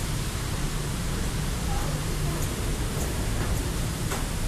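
Steady hiss of rain falling, with a low hum underneath.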